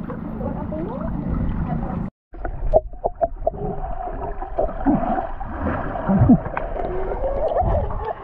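Water heard through an action camera held underwater: muffled gurgling and bubbling with scattered sharp clicks, after a brief stretch of above-water voices and water noise that cuts off suddenly about two seconds in.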